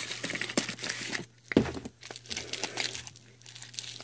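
Clear plastic coin bag crinkling and rustling as it is handled and worked open, with a soft thump about one and a half seconds in.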